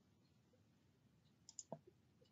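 Near silence: room tone, broken by a few faint, quick clicks about one and a half seconds in.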